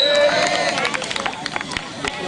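Voices of a crowd of schoolboys chattering and calling out at an outdoor volleyball game. A brief high steady tone sounds at the very start, and a scatter of sharp clicks falls in the middle.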